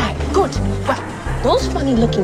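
Film soundtrack: a woman's voice over background music with a steady low bass line, and short high yelps about every half second.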